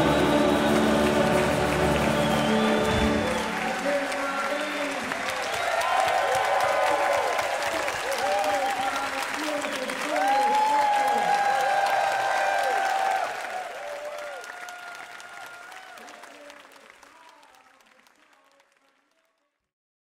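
A large choir's final held chord cuts off about three seconds in, followed by loud applause with whooping cheers from the hall. The applause fades away over the last several seconds.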